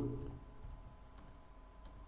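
A few faint computer keyboard key clicks while typing, the clearest about a second in and again near the end.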